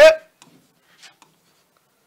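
A man's word trailing off, then a few faint, light ticks of a stylus writing on a touchscreen display, about half a second and a second in.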